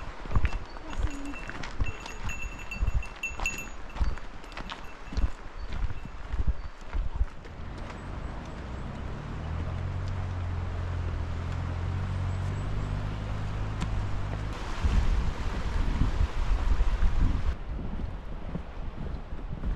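Hikers' footsteps crunching along a stony, gravelly trail, with a few faint high chirps early on. About eight seconds in, a steady low rumble sets in, and near the end a loud gusty hiss of wind on the microphone takes over.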